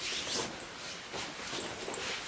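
Rustling and swishing of a shiny black leather-look jacket as it is swung on and the arms are pushed through its sleeves, in several brief strokes.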